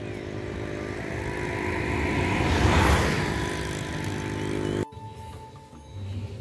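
A motor vehicle, likely a motorcycle, passing by: it grows louder to a peak about three seconds in and then fades. The sound cuts off abruptly about five seconds in.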